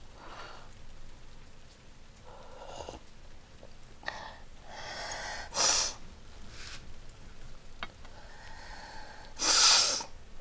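A woman sniffing and taking shaky, gasping breaths, with two sharp, loud sniffs, one about five and a half seconds in and one near the end.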